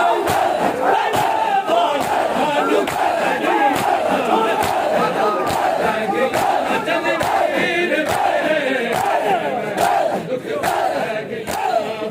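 Rhythmic chest-beating (matam) by a large crowd of bare-chested men, open hands striking bare chests together about twice a second, under the loud unison chanting and shouting of the same crowd.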